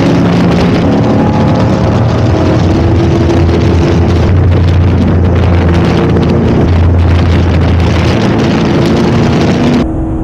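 Ford GT40 MkII replica race car's engine running on track at a fairly steady pitch, heard through its extra track mufflers, under heavy wind noise on the microphone. The wind noise cuts off abruptly just before the end.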